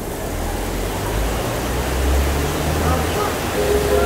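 Heavy rain pouring, a steady hiss, with a low rumble swelling in the middle.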